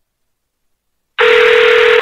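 A telephone ringing: one steady electronic ring that starts about a second in and stops just before the call is answered.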